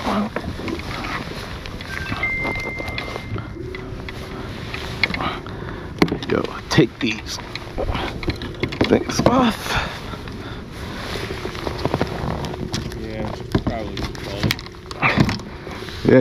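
Scattered knocks and clicks of fishing gear being handled in a plastic kayak, over a steady low hum.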